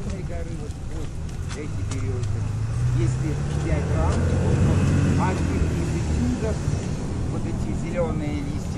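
A river motor ship's diesel engine running with a steady low hum that grows louder and rises slightly in pitch about two seconds in, under passengers' chatter on deck.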